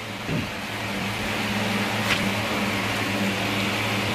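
A steady low machine hum with an even hiss over it, like a fan or other running appliance in the room.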